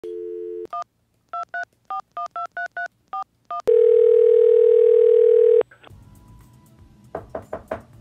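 Telephone call placed on a landline: a dial tone, then ten touch-tone (DTMF) digits dialled in quick beeps, then one long ring of the ringback tone, about two seconds. A few quick clicks follow near the end as the call connects.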